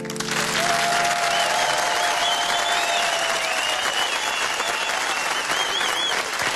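A studio audience applauds with cheers and whistles as the song's final piano chord dies away.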